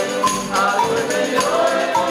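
Folia de reis ensemble: men singing in chorus to button accordion and guitars, with a steady drum and tambourine beat.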